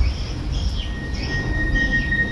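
Deep rumbling sound effect fading away after a boom, with a steady high-pitched tone coming in about a second in.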